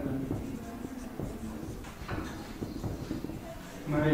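Felt-tip marker scratching and squeaking on a whiteboard as a word is written, in short irregular strokes, under a faint low voice.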